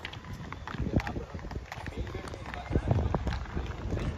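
Children's inline skates rolling and clacking irregularly on a concrete court, with children's voices in the background.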